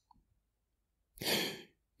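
A man's short, audible in-breath, a little over a second in.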